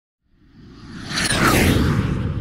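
Swoosh sound effect for an animated logo intro: a whoosh that swells up over about a second, with a low rumble beneath and a quick falling sweep near its peak.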